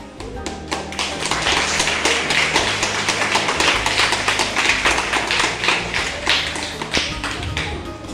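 Audience clapping, building up about half a second in and dying away near the end, over background music.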